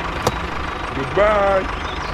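Tractor engine idling with a steady low rumble, with a sharp click just after the start. About a second in, a short high, wavering voice-like squeak lasts about half a second.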